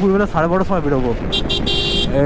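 A vehicle horn sounding in traffic over a man's voice. It gives two short toots about a second and a half in, then a longer one.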